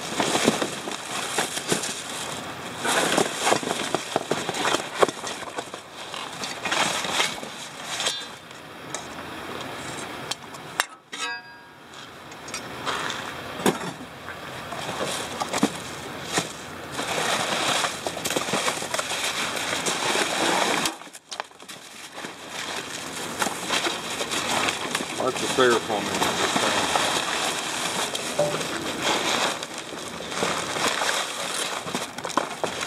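Plastic wrapping and bags rustling and crinkling as items are shifted by hand in a dumpster, with scattered knocks and clinks. The noise breaks off suddenly for a moment twice.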